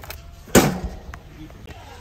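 A 2 lb (908 g) box of active dry yeast dropped into a wire shopping cart lands with a single sharp thump about half a second in, followed by a couple of small clicks.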